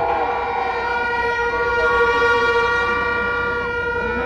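A horn sounded in one long, steady note for about four seconds over the noise of a crowd, with a second, wavering tone above it for the first couple of seconds.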